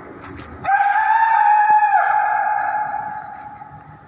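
A man's long, loud call, held on one pitch, starting just under a second in and lasting over a second. It rings on and slowly dies away as it echoes around the vaulted stone gateway.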